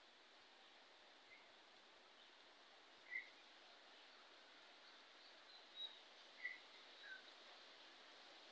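A bird giving a handful of faint, short high chirps, spaced a second or more apart, over quiet outdoor hiss.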